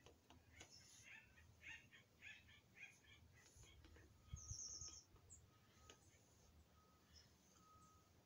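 Near silence with faint bird chirps: a quick run of short chirps in the first few seconds, then a brief high trill about halfway through, joined by a soft low bump.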